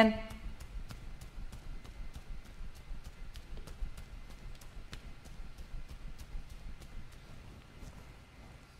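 Faint, even clicking, about three clicks a second, over quiet room tone.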